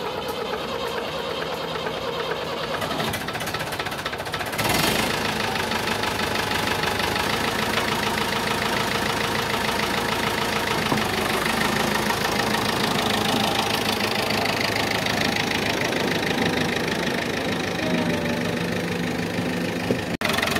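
David Brown 990 four-cylinder diesel engine on a cold start: it turns over and catches about five seconds in, then runs on and settles to a low, steady idle near the end. The low, constant idle comes after a rebuild and resealing of its injector pump.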